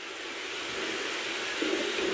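A steady hiss-like rushing noise that grows slowly louder, with a faint low hum near the end.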